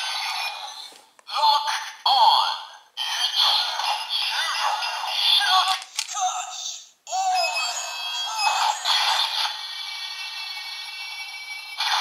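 A Kamen Rider Gaim DX Musou Saber toy sword playing its electronic sound effects, jingle music and voice calls, set off by a Melon Lockseed locked into it. The sound is thin and tinny from the toy's small speaker and comes in several bursts with short breaks, ending on a steadier held sound.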